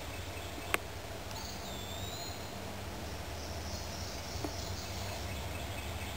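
Woodland ambience with a bird calling once about a second and a half in, a short high whistled note that dips and then rises. A faint high buzz of insects follows in the middle, over a steady low hum, with a single click just under a second in.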